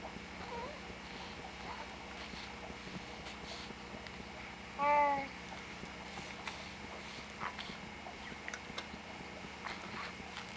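A newborn baby gives a single short coo about halfway through, lasting about half a second. Faint scattered clicks and rustles sit over a steady low hum.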